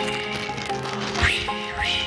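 Sustained background music with homemade sound effects under it: cellophane crinkling to imitate a forest fire, and breath blown onto the microphone to imitate wind, rumbling in gusts about a second in and again near the end.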